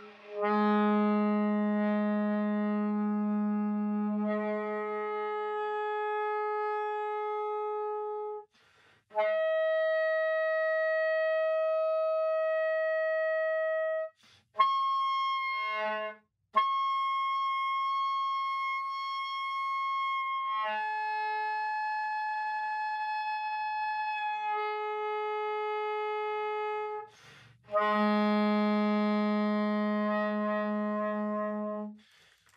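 Soprano saxophone playing the overtone series on the low B-flat fingering: a long low note, then the octave, the next overtone, a few short broken attempts about halfway through, and a higher overtone held. It then steps back down through the overtones to the low note, with short breath pauses between notes.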